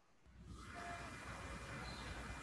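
Faint, steady hiss of room tone and microphone noise, starting a moment in after brief silence.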